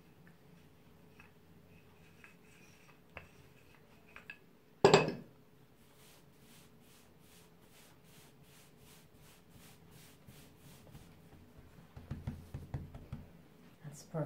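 Wooden rolling pin working scone dough on a wooden tabletop. There is one loud knock about five seconds in as the pin is set down, then faint evenly spaced ticks. Near the end come hands rubbing and patting the dough.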